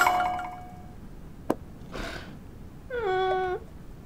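Comic drama sound effects: a bright mallet-percussion sting that rings on at the start, a sharp click about a second and a half in, a brief swish, then a short pitched call about half a second long, dipping slightly in pitch, near the end.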